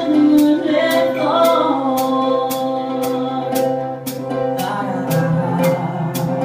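Live band playing a rock song on cello and ukulele, with singing and a steady high percussion beat about twice a second.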